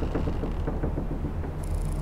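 Trailer sound design: a low, steady rumbling drone with faint, quick ticking over it.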